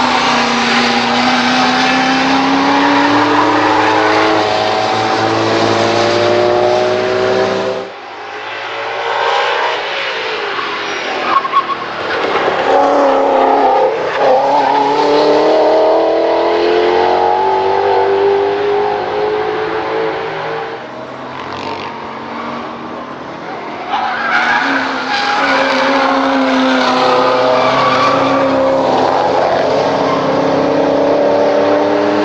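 American V8 muscle and sports cars (Chevrolet Corvette C6, Ford Mustang, Chevrolet Camaro) accelerating hard on track, engines revving up through the gears in three separate passes. The sound breaks off abruptly about eight seconds in and again near the end as one car gives way to the next.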